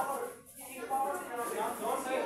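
Voices in an echoing hall, people talking and calling out with no clear words, with a short lull about half a second in.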